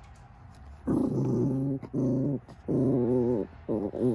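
A small dog growling four times in a row, each growl lasting roughly half a second to a second. The dog is guarding its tennis ball from its owner.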